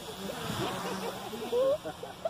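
Low, indistinct voices talking, over a steady low hum from the small motor and propeller of a lightweight RC slow-flyer plane passing overhead.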